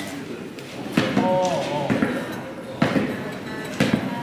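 Speech from the played clip with music under it, and a few short knocks: about a second in, near three seconds and just before the end.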